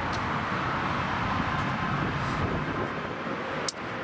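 Steady noise of road traffic going by outdoors, with a single short click near the end.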